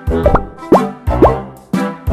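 Upbeat swing-style background music with a regular beat, overlaid by a few quick rising pop sound effects about half a second apart in the first part.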